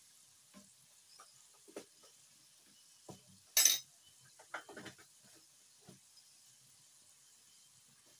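Mostly quiet, with a few faint clicks and knocks of a steel spoon against a ceramic bowl as salt and black pepper are added to a raw egg. The loudest sound is a short hiss about three and a half seconds in.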